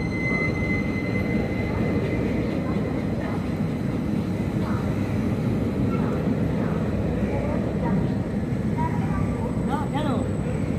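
Indian Railways passenger coaches rolling slowly past the platform, a steady low rumble from the wheels and running gear, with people's voices faintly in the background.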